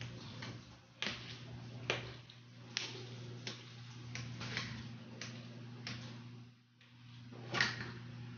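A knife slicing a rolled log of yeast dough into rounds, the blade tapping the countertop with each cut, about once a second.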